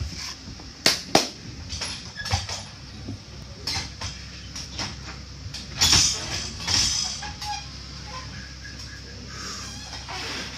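Scattered sharp claps or slaps and short cries in a large hall while a lifter sets up under a loaded barbell in a squat rack, with a louder thud about six seconds in as he gets under the bar.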